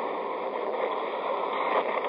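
Steady hiss and rush of an old, narrow-band speech recording during a pause in the talk, with no voice.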